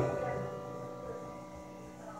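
Soft background music of long held notes over a faint low hum. One note shifts about a second in. The echo of a man's amplified voice fades out in the first half second.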